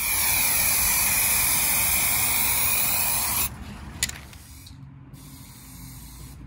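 Aerosol spray-paint can spraying onto a metal frame: one long, even hiss that cuts off suddenly after about three and a half seconds, followed about half a second later by a single sharp click.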